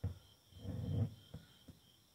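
A filled glass mason jar being handled on a tabletop: a soft thump at the start, a low muffled rub, then two light knocks.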